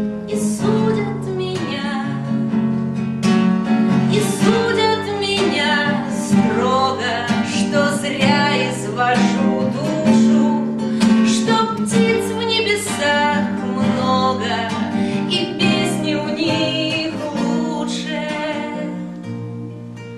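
A woman singing a song to her own nylon-string classical guitar accompaniment, played with a capo; the song fades away near the end.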